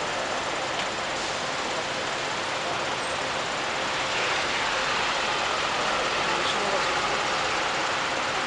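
Busy city street ambience: a steady wash of traffic with a vehicle passing close by, a little louder from about halfway through, over a background murmur of crowd voices.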